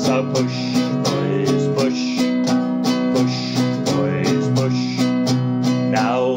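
An acoustic guitar strummed in a steady rhythm as a folk-song accompaniment, a few chord strokes a second.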